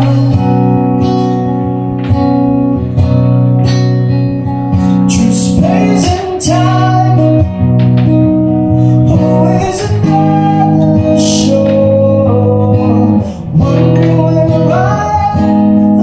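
Live acoustic music: a strummed acoustic guitar accompanying singing voices, with long held sung notes and no clear words.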